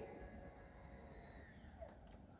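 Near silence, with the faint steady whine of the power rear wind deflector's electric motor raising it. The whine falls slightly and fades out about one and a half seconds in as the deflector reaches the top.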